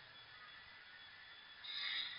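Faint room tone with a steady low hiss in a pause between spoken sentences, and a soft rush of noise near the end.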